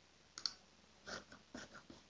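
Faint, irregular clicks and taps, about half a dozen short strokes with no steady rhythm.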